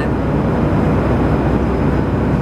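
Loud, steady cabin noise of a jet airliner in cruise flight: the continuous rush of engines and airflow heard from inside the passenger cabin.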